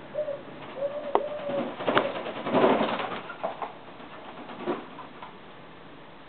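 A dove coos twice, a short note and then a longer one. About two seconds in comes the loudest sound, a burst of wing flapping and splashing in a shallow water dish as the doves bathe, followed by a couple of smaller splashes.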